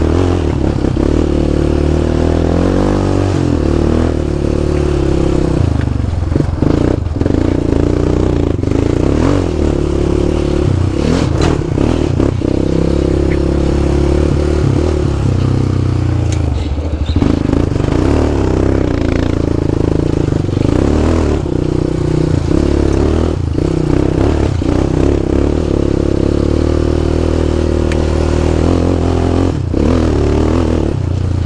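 Yamaha Raptor 700 ATV's single-cylinder four-stroke engine running under way, its pitch rising and falling with the throttle and dipping briefly a little past halfway. Scattered knocks and clatter from the tyres and suspension going over loose rock and gravel.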